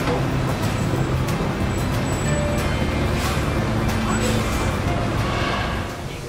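Busy city street ambience: a steady traffic rumble with voices and music mixed in.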